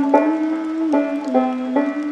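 Banjo played slowly in old-time clawhammer style: single plucked notes start sharply about every half second and ring over one another, with a faint steady hiss of rain behind them.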